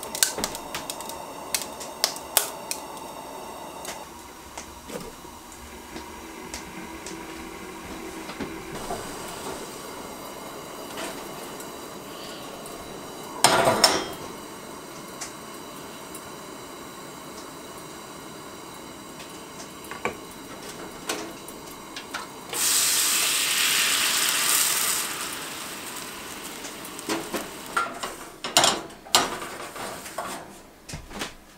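Propane camp stove burner hissing steadily under a kettle and then a stainless steel pan, with clinks and clatters of the cookware on the metal grate. There is a loud knock about halfway through, a loud hiss for about two seconds near the end, and a run of clatters as the pan is wiped.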